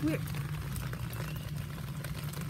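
Steady, low rush of water.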